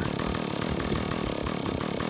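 Small chainsaw engine idling steadily.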